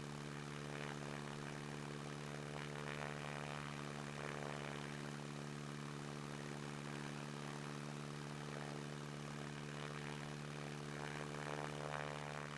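Stinson 108-2's 165 hp Franklin six-cylinder engine and propeller at full takeoff power during the climb-out, a faint, steady drone that holds one pitch throughout.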